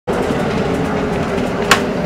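Steady engine and road noise heard inside a city bus, with a held low hum under it and a single sharp click near the end.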